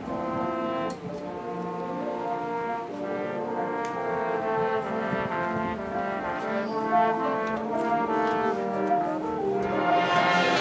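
High school marching band's brass playing slow, held chords that change every second or so, with a brief dip in loudness about a second in.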